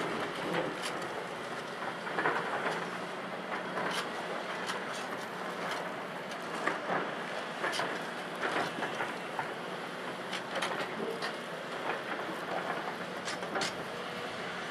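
Volvo EC700B LC crawler excavator running with a steady diesel hum while its bucket works in broken limestone, with irregular clanks and the clatter of rock throughout.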